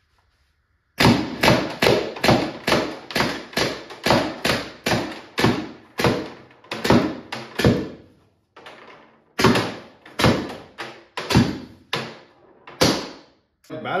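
Tippmann TiPX paintball pistol, running on a 16-gram CO2 cartridge, firing a rapid string of semi-automatic shots, two to three a second. The string pauses briefly about eight seconds in, with a couple of weaker shots, then goes on more slowly for a few more shots.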